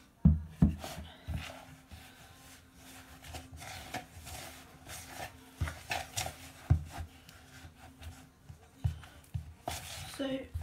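Spoon stirring and scraping a sticky bread dough in a plastic mixing bowl, with irregular knocks of spoon and bowl against the worktop, the loudest just after the start.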